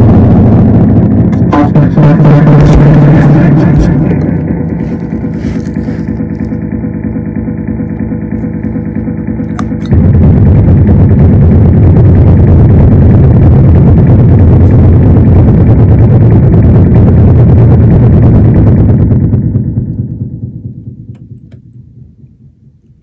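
Amplified violin run through effects, playing a loud, dense drone of held low tones. It drops back about 4 s in, surges back abruptly about 10 s in, and fades away over the last few seconds.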